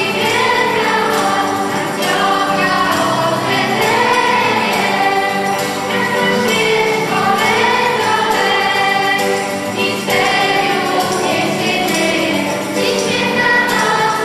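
A girl soloist sings a Christmas carol to electronic keyboard accompaniment, over a light, steady beat.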